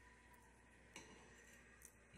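Near silence: faint room tone with two small clicks, about a second in and near the end, as a fork touches the plate.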